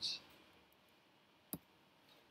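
A single sharp click about one and a half seconds in: the click that advances the presentation slide, over faint room tone.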